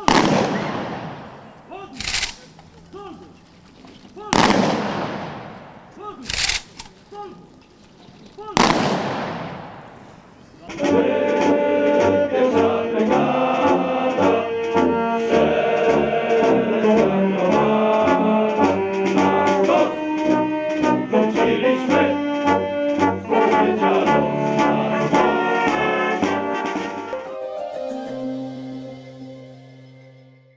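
Military honour guard firing a three-volley rifle salute: each volley one sharp crack with a long echoing tail, about four seconds apart, with a lighter clack between volleys. About eleven seconds in, a military brass band starts playing.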